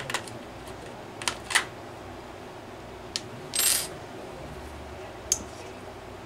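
Small metal tools and engine parts being handled, with a few sharp clicks and clinks and a short rattling clatter about three and a half seconds in.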